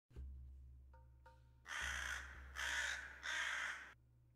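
Three harsh caws from a bird of the crow family, each about half a second long, over a low steady drone.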